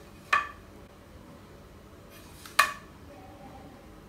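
Two sharp clinks about two seconds apart: a square knocking against a planed board as it is set to the board's edge to check it for square.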